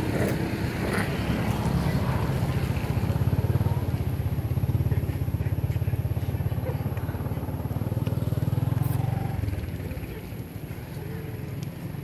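A vehicle engine running steadily with a low, even throb, which drops away about nine seconds in.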